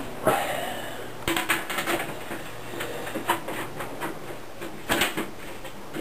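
Irregular clicks and knocks of a perspex side panel being handled and fitted onto a PC case, with a cluster of louder knocks about five seconds in.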